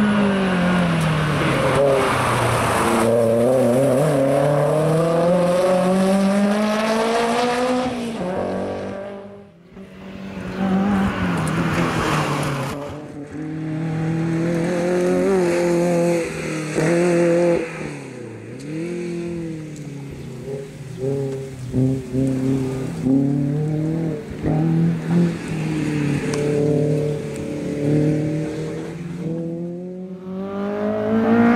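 Toyota MR2 race car's engine revving hard, its pitch rising and falling again and again as it accelerates, lifts and corners. There is some tyre squeal in the turns and a brief dip about nine seconds in.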